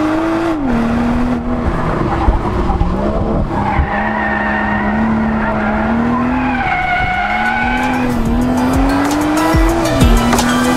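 BMW M240i xDrive's turbocharged 3.0-litre inline-six pulling hard, heard from inside the cabin. The revs climb and fall back sharply several times, and the tyres squeal twice, around the middle and again near the end, as the car slides through the corners.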